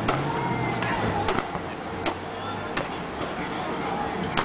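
Padded pugil sticks clashing in a bout: a series of sharp knocks, about six over four seconds.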